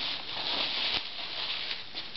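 Plastic bubble wrap crinkling and rustling as it is folded around a small breakable item by hand, with a short knock about a second in.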